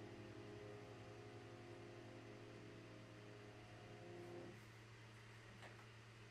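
Final chord of a grand piano ringing out softly for about four and a half seconds, then stopping as it is damped, leaving only a faint low hum.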